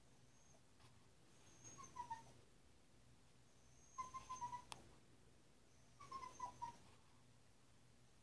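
Puppy whining faintly: three short, high whimpers about two seconds apart, each a few wavering notes. A single sharp click comes at the end of the middle whimper.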